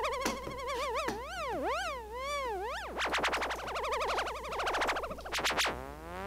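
Korg MS-20 analog synthesizer noise loop with the filters turned all the way up, its resonance being swept. The pitch warbles and swoops up and down, turns into a fast flutter about halfway through, and begins a long rising glide near the end.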